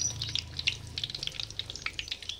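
Parotta dough deep-frying in hot oil in a kadai: a dense, steady crackling sizzle.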